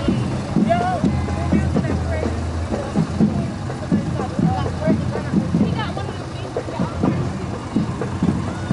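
A parade vehicle's engine running low and steady as it rolls past at walking pace, under people's voices around the street.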